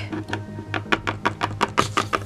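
A quick run of light clicking taps, about six a second and speeding up, typical of a small plastic toy figure being tapped along a hard tabletop. Underneath is quiet background music with a pulsing low beat.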